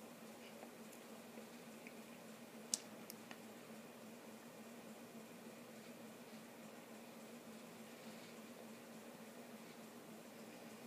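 Near silence: a faint steady hum of room tone and one brief click about three seconds in. The supported spindle spinning in its enamel-inset bowl makes no noticeable sound: a smooth spin with no weird sounds.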